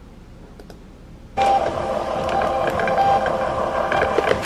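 Thermal label printer feeding and printing a shipping label. It starts suddenly about a second and a half in with a loud, steady motor whine and whir.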